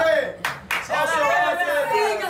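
A small group's voices, with two sharp hand claps about half a second in.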